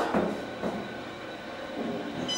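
Otis Series 5 hydraulic elevator cab travelling down: steady, quiet ride noise of the moving car, with a faint thin high tone.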